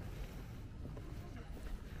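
Outdoor ambience with a steady low rumble of wind buffeting the microphone, and faint voices in the background.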